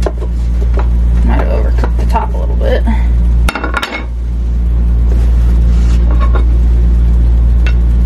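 A spatula scraping and knocking against an air fryer basket and a ceramic plate, in scattered clicks and clatters, as a cooked flatbread pizza is lifted out. A steady low hum runs underneath and dips briefly about halfway through.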